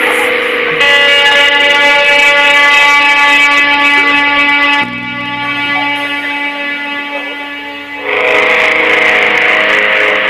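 Noise-rock band playing live: loud held chords of distorted electric guitar ringing out as a drone, with no drums. The chord changes about a second in, the sound drops quieter near the middle and swells back loud about eight seconds in.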